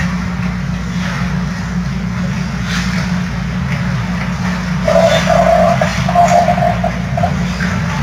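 Ice rink arena ambience during a hockey game: a steady low hum under a noisy haze, with a few faint clacks from the play on the ice. About five seconds in, a mid-pitched held tone or call sounds for about two seconds, broken into several pieces.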